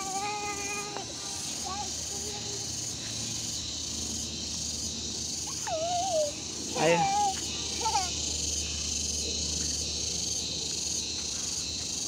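Insects buzzing in a steady high-pitched chorus with a faint even pulse, under brief voice sounds from a small child near the start and again about six to eight seconds in.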